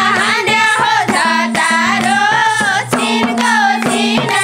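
Nepali dohori folk song: women singing a bending melodic line to a regular beat of madal hand-drum strokes.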